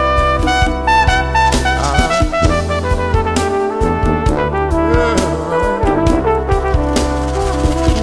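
Jazz brass ensemble playing: trumpets and trombones sound together over a drum kit and a strong low bass line.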